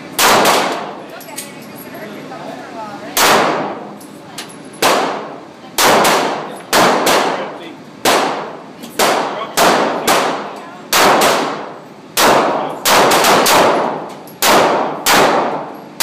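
Semi-automatic pistol firing shot after shot, well over a dozen at uneven spacing, some in quick pairs and triples. Each crack rings out in a long echo inside the indoor range.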